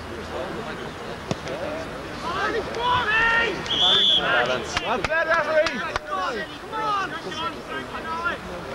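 Shouting voices of football players and spectators, several overlapping and building from about two seconds in. A short, shrill referee's whistle blast comes about four seconds in, and a few sharp knocks follow just after.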